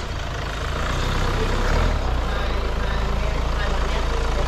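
Hyundai Tucson diesel engine idling with a steady low rumble that grows a little louder about a second in.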